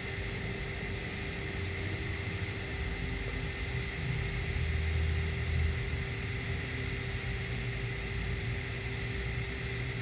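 TIG welding arc burning at low current, about 55 amps, on a stainless steel pipe root pass: a steady soft hiss with a faint steady hum. A low rumble swells and fades about four to six seconds in.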